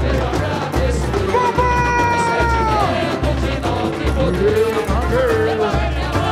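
Live samba-enredo from a samba school parade: the bateria's bass drums beat steadily under the music, about one beat every 0.8 s. Over it a voice holds a long note that slides down in pitch in the middle, and another near the end.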